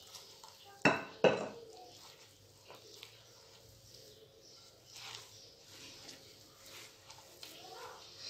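Two sharp clinks of a glass cup knocking against the bowls as flour is scooped and tipped in, about a second in, followed by faint scraping and soft ticks of hands working flour into cookie dough in a glass bowl.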